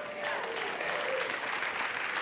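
Congregation applauding, with a few voices mixed in.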